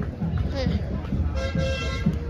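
A horn sounds one steady toot of about half a second, starting a little past halfway, over crowd noise.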